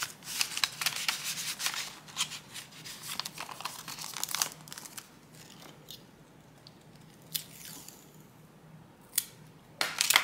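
Paper envelope and sticker sheets rustling and crinkling as they are handled and folded, busiest in the first four seconds or so. Then it goes quieter with a few small taps. Near the end come a couple of short sharp rips of tape being pulled from a dispenser.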